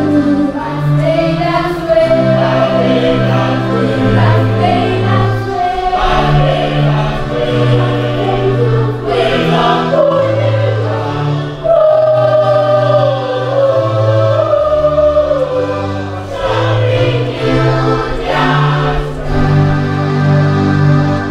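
A choir singing a gospel-style song, accompanied by an electronic keyboard that holds sustained low chords changing every second or two under the sung melody.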